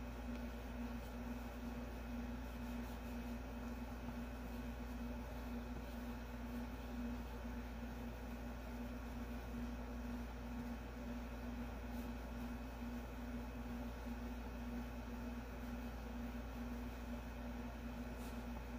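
A steady low hum with an even hiss, unchanging throughout, like a fan, appliance or electrical hum in the room.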